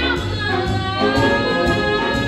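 High school jazz big band playing, with female vocalists singing over the band.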